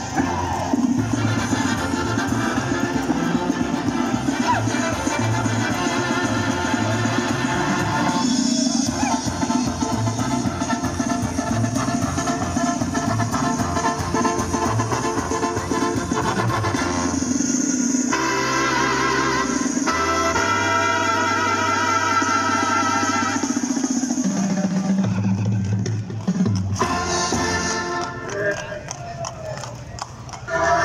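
Mexican banda music playing loudly: brass and drums with a steady beat, accompanying the dancing horses.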